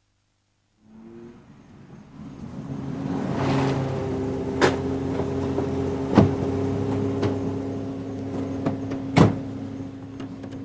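A car's engine running as it pulls up, steady after a build-up of a couple of seconds. Sharp clunks of a car door opening and shutting come through it, the loudest about six and nine seconds in.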